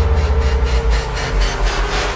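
Movie-trailer soundtrack: a heavy bass rumble under a fast, even pulse of about five beats a second.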